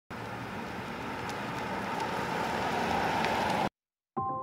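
Toyota Mirai hydrogen fuel cell car driving slowly: a steady noise of tyres on the road, growing slightly louder as it approaches, with no engine note. It cuts off abruptly just before the end.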